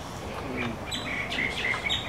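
Birds chirping: a run of short, high chirps that starts about half a second in and repeats to the end.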